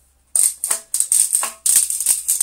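Metal telescopic vacuum cleaner wand rattling in quick repeated shakes, about three or four a second. The wand is broken: the plastic part that locks it is missing, so it is loose.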